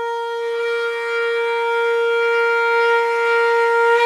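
A single long note held on a wind instrument in the background music, steady in pitch and swelling slightly toward the end.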